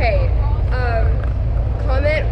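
Steady low rumble of a school bus running, heard from inside the passenger cabin, with short bits of a girl's voice over it.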